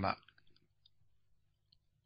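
A man's voice finishing a word, then near silence: a pause in the speech.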